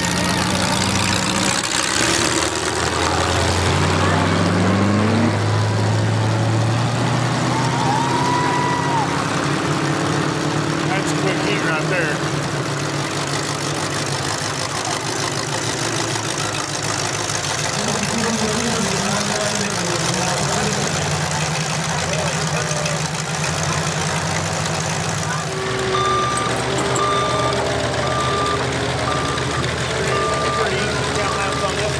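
Figure 8 race car engines running and idling, with a rising rev a few seconds in. Near the end, the steady, evenly spaced beeping of a vehicle's reversing alarm starts.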